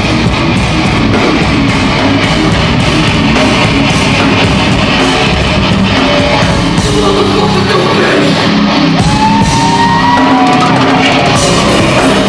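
Live heavy rock band playing loud with distorted electric guitars and drums, with a high note sliding up and holding near the end.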